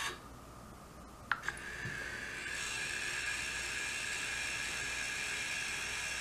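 Bulldog valve robot's electric gear motor stopping at the end of its closing stroke on the ball valve, then after about a second of quiet and a click, starting up again and running with a steady whir as it drives the valve back open.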